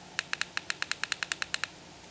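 A quick run of about fourteen sharp clicks, roughly ten a second, as a Kodi menu is scrolled down one step at a time, ending about a second and a half in.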